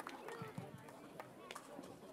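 Audience applause dying away to a few scattered claps, with faint voices chattering in the crowd.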